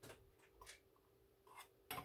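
Faint, scattered light taps and scrapes of a small can against a glass mason jar as sweetened condensed milk is poured into iced coffee, over a faint steady hum.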